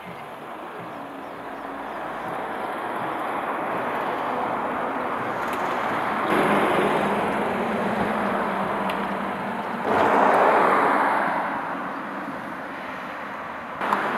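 Road vehicles passing, heard as a steady rush that builds slowly, rises suddenly about six seconds in, and swells again about ten seconds in before fading back.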